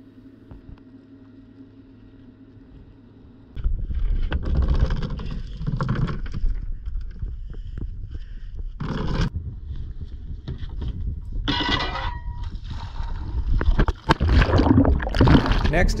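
A faint steady hum, then about three and a half seconds in, loud outdoor noise on a boat's bow: wind rumbling on the microphone and water, with the anchor chain knocking and rattling a few times as the anchor hangs from it.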